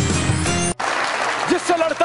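Show theme music that cuts off suddenly under a second in, followed by audience applause. A man's voice starts over the applause near the end.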